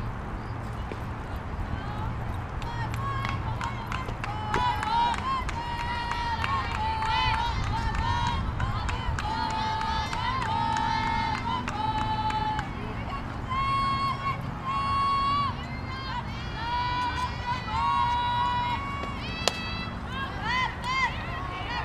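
High-pitched girls' voices calling and chanting drawn-out cheers, one call after another. About half a second before the end a single sharp crack: a softball bat hitting the ball.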